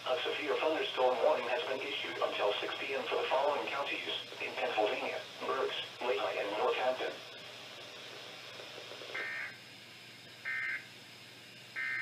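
NOAA Weather Radio's synthesized voice reading out a severe thunderstorm warning, then a pause and three short identical bursts of SAME digital data tones about a second and a half apart: the end-of-message code that closes the alert.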